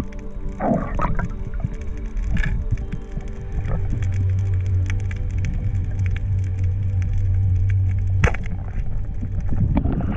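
Background music of sustained chord tones. A deep bass note comes in about four seconds in and cuts off sharply about eight seconds in.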